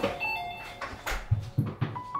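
Soft background piano music with a string of sharp knocks over it; three loud, low thumps come in quick succession in the second second.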